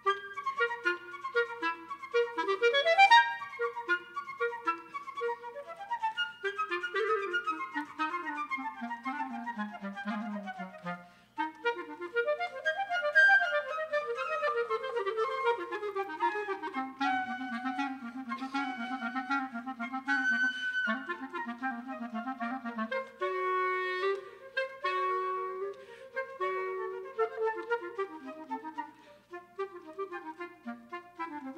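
Live flute and clarinet duet: two interwoven melodic lines, the clarinet playing running scale passages that climb and descend into its low register while the flute plays above it. The music breaks off briefly about eleven seconds in, then resumes.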